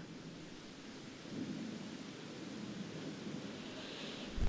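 Faint steady room tone, a soft even hiss with a slight low rumble swelling about a second and a half in.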